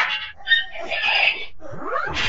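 Cartoonish sound effects from a Noggin TV logo ident, heard in altered form. A sudden burst opens it, a sharp hit comes about half a second in, then jumbled squeaky sounds, and a rising glide near the end.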